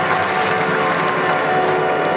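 Audience applauding with ballroom dance music starting underneath, steady and loud.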